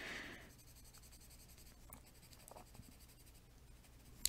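Faint scratching of a coloured pencil shading on paper, with a few soft strokes.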